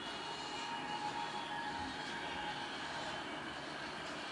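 Faint steady background hum and hiss with a few thin, wavering tones, and no distinct event.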